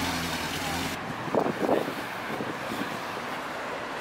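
Datsun 510 sedan driving slowly away at low revs, its engine note steady and then fading out about a second in. After that come faint background voices.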